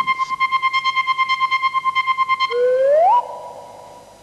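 Electronic cartoon sound effect: a steady synthesized tone pulsing rapidly for a couple of seconds, then a tone that glides upward and holds, fading away.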